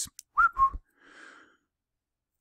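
A man's short whistle: one quick note that rises and then holds briefly, followed by a soft breath out.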